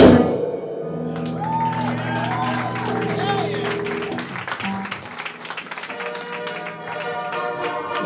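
A live grindcore band's song stops dead, and held amplified notes ring on in the club, with the crowd whooping and calling out.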